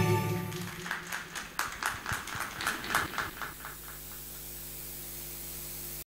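The song's backing music dies away. A small audience then claps sparsely, in scattered, uneven claps for about three seconds. A steady low hum remains after the clapping stops.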